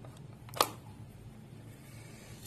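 One sharp plastic click about half a second in as a phone charger's plug is pushed home into a wall socket.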